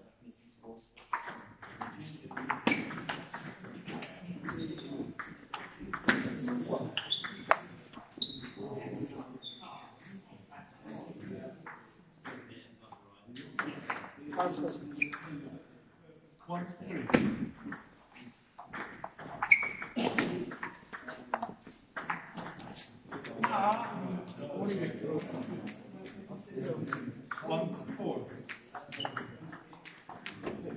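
Celluloid-type table tennis ball clicking off rubber bats and the table in rallies: a run of sharp, irregular clicks with short gaps, amid voices of people talking in the hall.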